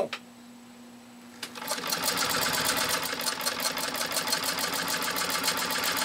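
A 1924 Singer 128-3 electric sewing machine starts with a click about a second and a half in, then runs steadily with an even, rapid stitching rhythm. It is sewing through ten layers of heavy commercial upholstery fabric without strain, and it runs quiet under that load.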